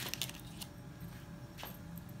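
Small plastic terminal block set down among tools and parts on a bench: a quick cluster of light clicks and rattles at the start, then two single clicks, over a faint low hum.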